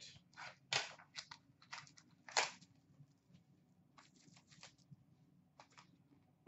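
Faint, irregular rustles and clicks of trading cards and plastic pack wrapping handled by hand, a dozen or so short sounds with the clearest about a second in and two and a half seconds in.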